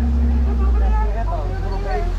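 Safari ride truck's steady low engine rumble while driving, with voices talking faintly over it.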